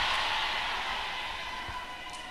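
A wash of noise in a large church hall, the congregation's sound and the room's echo, slowly fading away.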